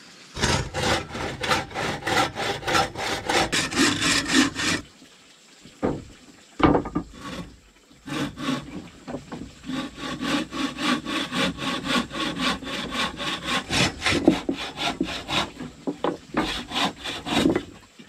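Bow saw cutting through wood by hand: rapid, even back-and-forth strokes, about four or five a second. The sawing stops for a few seconds near the middle, then starts again and runs on.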